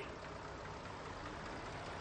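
Faint, steady hum of a tractor engine running as it pulls a potato planter.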